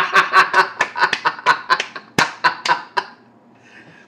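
A man laughing hard, a rapid run of laughs about five a second that tails off about three seconds in, with one sharp click partway through.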